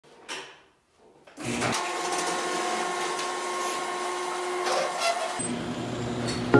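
Electric garage door opener running with a steady whine for about four seconds, then stopping.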